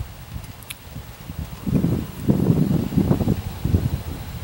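A man sniffing beer in a glass mug with his nose close to the rim: a run of short sniffs, several a second, in the second half.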